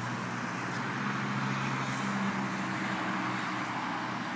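Road traffic passing on a multi-lane road: a steady rush of tyres and engines with a low engine hum underneath.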